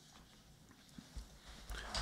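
Near silence in a quiet room, with two faint clicks a little after a second in.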